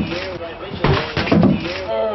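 People laughing in loud, repeated bursts.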